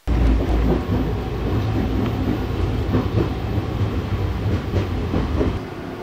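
A moving vehicle, most likely a train: a loud, heavy rumble with steady rattling and clatter that cuts in suddenly and eases a little just before the end.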